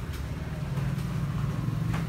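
A low, steady motor rumble that grows louder about halfway through, over faint market bustle.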